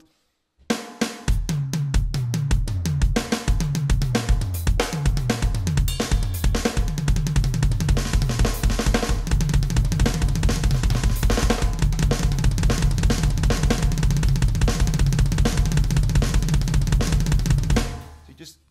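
Electronic drum kit played in the repeating right hand, left hand, kick linear phrase, a kick on every third note. It starts after a brief silence and gradually speeds up.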